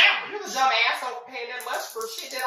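Speech: a woman's voice talking in quick, uneven bursts, with words not clearly made out.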